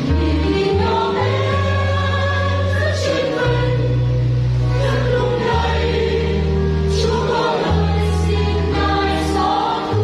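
Mixed choir of men's and women's voices singing a Vietnamese Catholic hymn in parts, over an accompaniment of long, sustained low bass notes.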